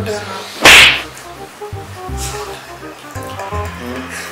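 A single sharp, loud whip-like swish or smack less than a second in, with a fainter swish about a second and a half later, over background music.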